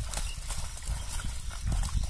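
Live fish thrashing in a seine net in shallow pond water: a scatter of short slaps and splashes over a low rumble that is loudest near the end.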